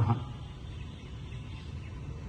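A man's word ends at the very start, then a steady low background rumble and hiss with no distinct event.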